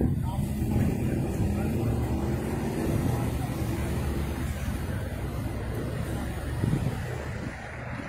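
A car engine running close by, a steady low rumble with a faint hum that fades about halfway through, under faint voices.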